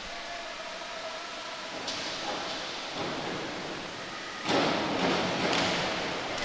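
Steady hall noise of an indoor diving pool. About four and a half seconds in comes a sudden rush of splashing as two synchronized divers enter the water together from the 3 m springboards, easing off near the end.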